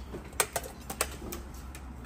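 Handling noise: about half a dozen short, light clicks and taps, irregularly spaced, over a steady low hum.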